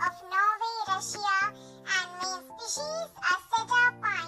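Background music for children with a high, child-like voice singing in short wavering phrases over held backing notes.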